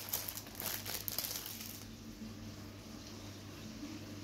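Faint crinkling and rustling of hands handling things during the first two seconds, then only a low steady hum.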